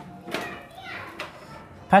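Faint voice sounds in the room: a short burst about a third of a second in, then quieter voices.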